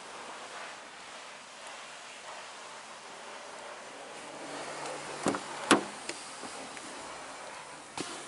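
Ford Mondeo estate's rear door being opened: two sharp clicks of the handle and latch about half a second apart, a little past the middle, then a smaller click, over a steady background hiss.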